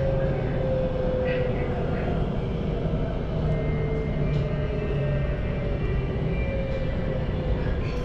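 MRT Blue Line electric train running on an elevated track, heard from inside the car: a steady low rumble with a motor whine that slowly falls in pitch as the train slows for the next station.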